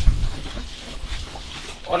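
A man's low, throaty grunting that fades out early, then his voice calling out "hey" near the end.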